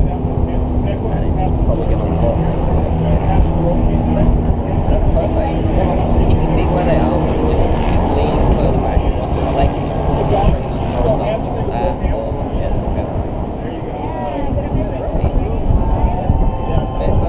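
Wind buffeting the camera's microphone, a loud steady rumble with the high end muffled, and indistinct voices under it.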